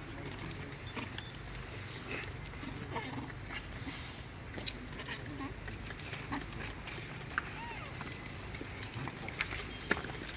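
A few short, high, squeaky macaque calls, one arching up and down late on, over a steady low hum and scattered small ticks.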